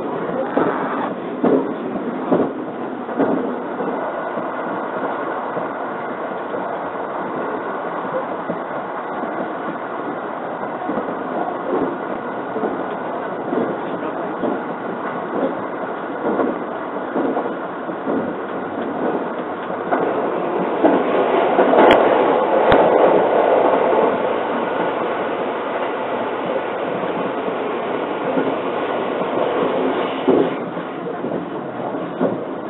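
Running noise of a 681 series limited express electric train at speed, heard from inside the passenger cabin: a steady rumble with rail-joint clicks in the first few seconds. About two-thirds of the way through, the noise swells louder for a few seconds and two sharp clicks come close together.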